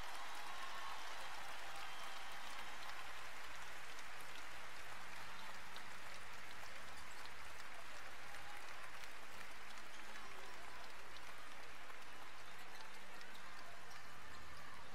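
Arena crowd applauding steadily as an injured player is wheeled off the court on a stretcher.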